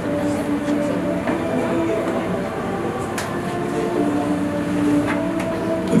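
A steady musical drone of held low tones under the scene, shifting slightly in pitch, with a few faint clicks about three and five seconds in.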